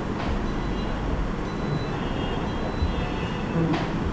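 Steady low background rumble with no speech, and a faint click near the end.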